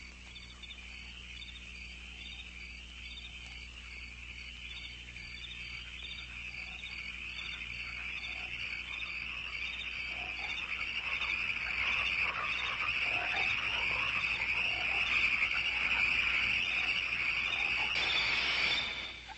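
Night chorus of crickets chirping in a steady, evenly pulsing trill, growing steadily louder throughout.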